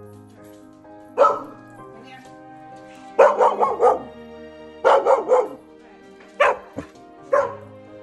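A young mixed-breed puppy barking in bursts: one bark, then a quick run of about four, another run of three or four, and two single barks near the end. Soft background music with sustained notes plays under the barks.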